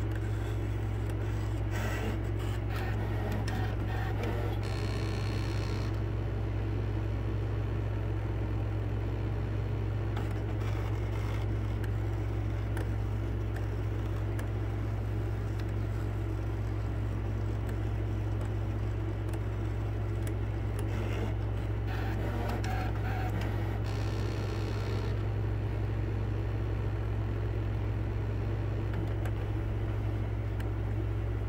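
Brother ScanNCut cutting machine running a cut: its motors whir steadily over a constant low hum as the blade carriage and mat move, with faint ticking and two brief higher, louder whirs along the way.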